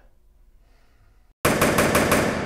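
Quiet for about the first second and a half, then a sudden loud burst of about four sharp cracks in quick succession, like a machine-gun sound effect, ringing on.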